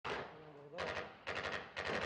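Gunfire: a loud shot with a trailing echo opens, then three short rapid bursts of automatic fire follow about half a second apart.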